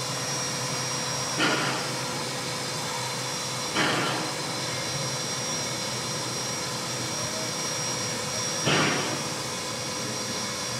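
Standing steam locomotive idling: a steady hiss of escaping steam, broken three times by a short, louder burst of steam.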